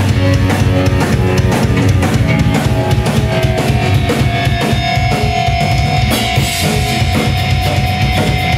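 Live heavy rock band playing loud: distorted electric guitar, bass and a busy drum kit with bass drum, snare and cymbals. A long held high note rings over the drums through the second half.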